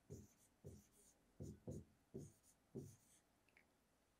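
Faint strokes of a pen writing on a board, about six short scrapes and taps in a row.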